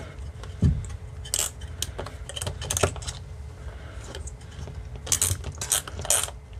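A small metal wrench clinking and clicking against the propeller nut as it is cranked down onto a drone motor shaft. The clicks come in quick irregular runs, one group in the first half and another near the end.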